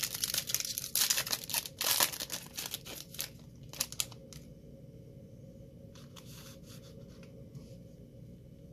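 The foil wrapper of a 2020-21 Donruss basketball card pack is torn open with dense crinkling for about two seconds. A few lighter, separate crinkles follow until about four seconds in as the pack is opened out.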